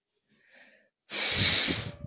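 A person's loud, heavy breath, one breathy rush lasting about a second, starting halfway through.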